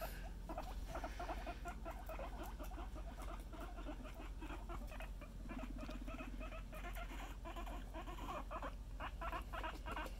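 Guinea pigs chewing romaine lettuce up close: a quick, continuous run of small crunching clicks.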